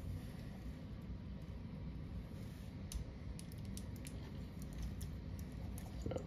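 Small clicks and light rattles of toy-figure parts being handled and pressed into peg holes, sparse at first and more frequent in the second half.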